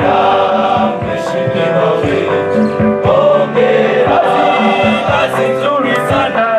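School choir of mostly male voices singing together in harmony.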